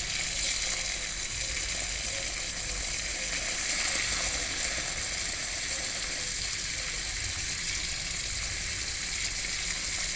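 Garden hose pistol-grip spray nozzle running, a steady hiss of water spraying out of it.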